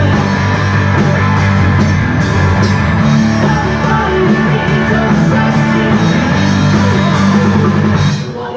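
Live rock band playing loudly: electric guitars and drums, with a singer.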